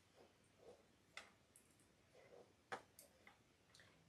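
Near silence with a few faint, short clicks, two clearer ones a bit over a second in and near three seconds in, from beads and a small plastic badge reel handled between the fingers.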